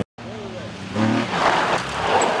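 Volvo 240 rally car on a gravel stage: a short engine note, then from about halfway the loud hiss of gravel spraying from the tyres as the car slides through the corner.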